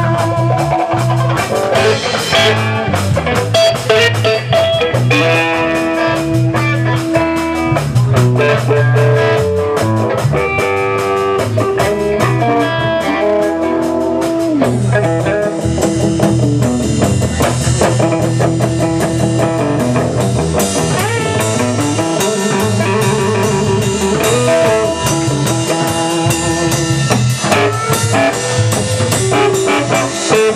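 Live blues band playing an instrumental break: lead electric guitar soloing over bass guitar and drum kit.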